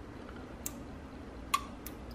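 Three clicks of small input switches on a red switch bank being flipped on by hand: one about two-thirds of a second in, then two close together past one and a half seconds.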